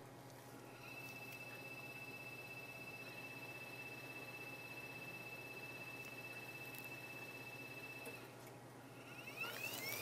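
Faint, steady high whine of a Warner-Bratzler shear machine's crosshead drive as the blade travels through a pork core. It starts about a second in and stops about two seconds before the end.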